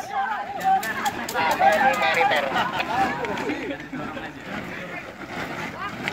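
Chatter of a group of people, many voices talking over one another, with a few light crackles in the first second or so.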